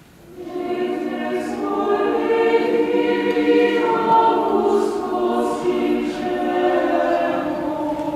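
Choir singing sustained, slow sung lines. The voices come in about half a second in, after a brief lull.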